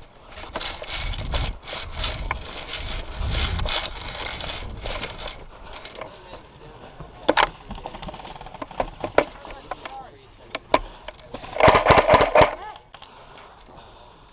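Footsteps and gear rustling as the wearer moves over grass, with scattered clicks and knocks. About twelve seconds in comes a loud, rapid run of clicks lasting about a second: a short full-auto burst from an airsoft electric rifle.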